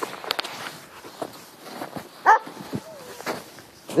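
A dog barks once, loudly, a little past two seconds in, with a fainter short sound about a second later, over scattered crunching and rustling of footsteps and handling in snow.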